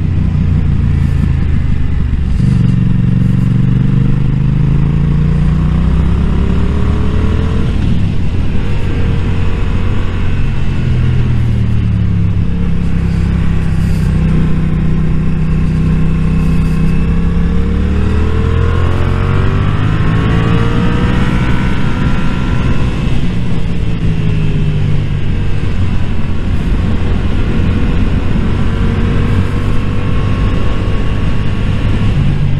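Motorcycle engine running under way, its pitch climbing and falling several times as the rider accelerates and eases off through the bends, with steady wind noise over the microphone.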